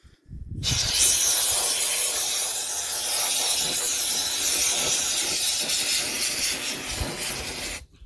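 Aerosol can of Universal Foam polyurethane spray foam discharging in one continuous hiss for about seven seconds, starting about half a second in and cutting off sharply just before the end. The foam is being sprayed to seal the bag into the well's mouth so the well closes tight.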